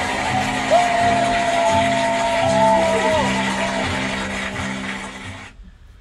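The closing bars of a hip-hop track: a steady beat under sustained synth tones, with one long held note through the middle. The music cuts off abruptly near the end.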